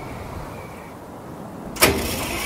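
Vintage Ford car's ignition switched on and the starter cranking, a sudden loud burst near the end after a quiet low rumble.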